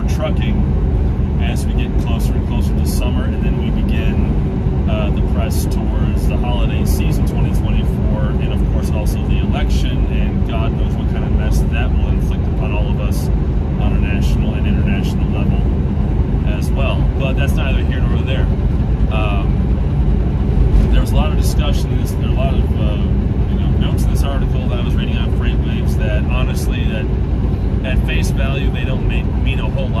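A man talking over the steady low drone of a semi-truck's diesel engine and road noise inside the moving cab.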